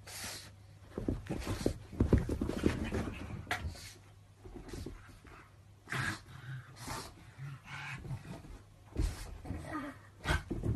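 A pug breathing noisily and scuffling as it plays with a cat, in irregular bursts that are loudest about two to three seconds in, over a faint steady low hum.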